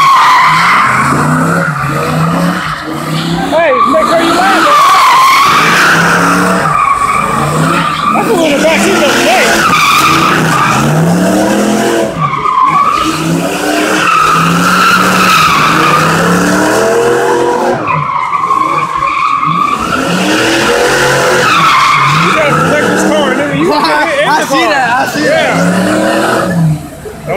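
Fox-body Ford Mustang GT's V8 revving hard as the car spins donuts, the rear tyres squealing and skidding. The engine and squeal rise and fall together in repeated surges about every two seconds as the car circles.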